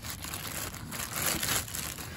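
Plastic wrapping crinkling and rustling as a hand handles the bagged inflatable and its cord inside a cardboard box.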